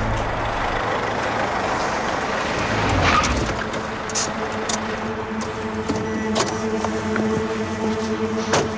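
Ford Ranger pickup truck driving up and coming to a stop, with engine and tyre noise that swells about three seconds in and then settles. A few sharp clicks follow in the second half as the truck's door is opened.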